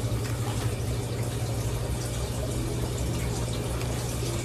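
Steady low hum with an even hiss: continuous background noise in a small room, with no distinct events.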